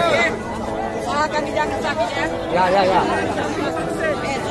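Several people talking over one another at once: loud, overlapping chatter with no single clear voice.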